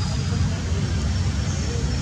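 Steady low outdoor rumble with an even hiss above it. A faint thin high tone comes in about halfway through.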